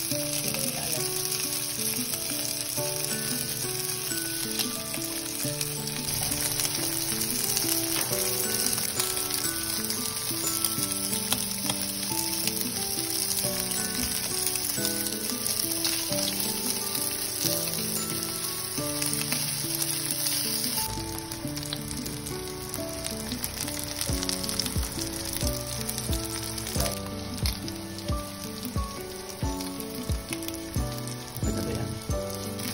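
Sliced sausage rounds sizzling steadily as they fry in oil in a nonstick frying pan, with background music playing throughout. Over the last several seconds, tongs click repeatedly against the pan as the slices are turned.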